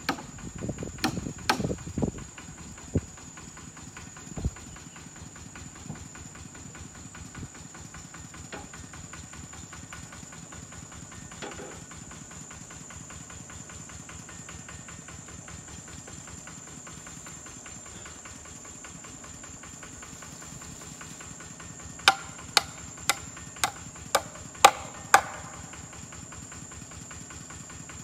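A hammer nailing a sign onto a tree trunk: seven sharp strikes about two a second, near the end. A few scattered knocks come at the start, and a steady high insect drone runs throughout.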